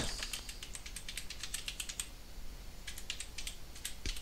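Computer keyboard typing an email address: a quick run of key clicks for about two seconds, a short pause, then a few more keystrokes.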